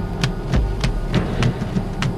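Background music in an instrumental stretch without singing: a percussion pattern of sharp strikes about three times a second over a steady low drum beat.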